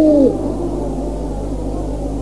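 A man's chanted recitation of an Urdu marsiya ends on a held note about a quarter of a second in, followed by a low murmur of many overlapping voices from the listeners. A steady mains hum of an old tape recording runs underneath.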